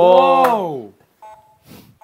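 A man's drawn-out vocal cry, held for about a second and falling in pitch as it ends, as a shot is taken at a toy basketball hoop game. It is followed by a faint, short electronic beep.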